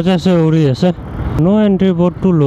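A man's voice singing in long, drawn-out phrases, loud and close, with the low rumble of the motorcycle ride underneath.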